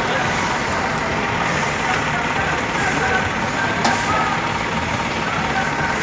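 Steady street noise of vehicles on a rain-wet road, an even hiss and rumble with no distinct events, with indistinct voices in the background.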